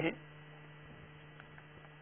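Steady, faint electrical hum in a pause between spoken words, with the end of a man's word heard at the very start.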